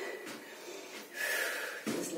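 A woman breathing out audibly through nose and mouth while swinging an arm and leg, with one longer breathy rush a little past the middle.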